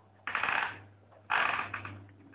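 Two short, sudden rattling clatters about a second apart, over a steady low hum.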